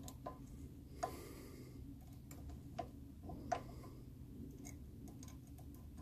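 Faint, irregular metallic clicks and ticks of a hex key turning the clamping screws of a quick change toolpost's tool holder, setting the lathe cutting tool in place.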